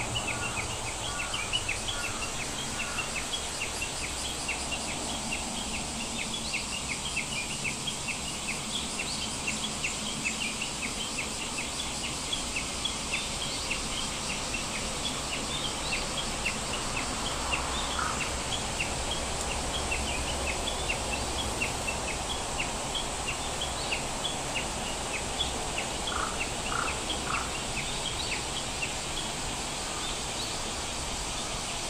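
Birds chirping: many short, high calls, several a second, over a steady background hiss, with quick runs of three or four lower notes near the start and again near the end.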